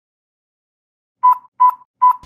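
Two short electronic test-tone beeps at one steady pitch, the first about a second in and the second less than half a second later, after a second of dead silence.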